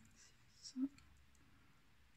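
Faint clicking and rustling of a metal crochet hook drawing cotton ribbon yarn through stitches while trebles are worked. A short spoken word comes just under a second in.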